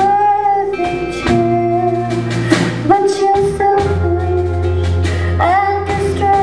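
A live rock band playing: long held melody notes over steady bass from electric and acoustic guitars, bass guitar and drum kit, with several cymbal hits.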